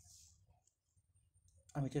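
A pause in spoken talk: a brief soft hiss at the start, then faint room noise with small clicks, then speech resumes near the end.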